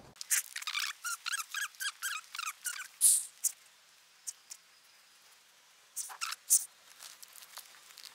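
A quick run of short, high-pitched squeaks, about four a second for the first three seconds, followed by a few faint clicks.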